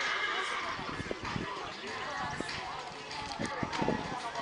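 Hoofbeats of a horse cantering on grass turf: an uneven run of dull thuds that grows louder and closer together near the end.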